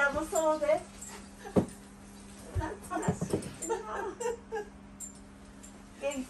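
Elderly women's voices: short high-pitched exclamations at the start and unclear talk in the middle. A few light knocks sound between them, over a steady low hum.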